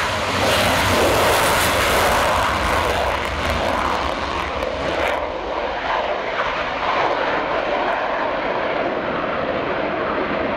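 Single-engine F-16 fighter jet taking off and pulling up into a steep climb on afterburner: a loud, continuous jet roar, loudest in the first few seconds and easing slightly after about five seconds as the jet climbs away.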